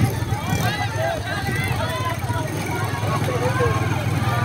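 Fairground hubbub: many children's voices calling and shouting over one another, over a steady low engine hum.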